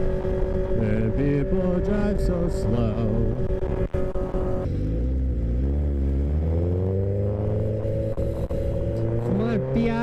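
Sportbike engine and wind noise from a moving motorcycle. The wind rush drops off sharply about halfway through as the bike slows. The engine pitch then climbs steadily over the last few seconds as the bike accelerates away.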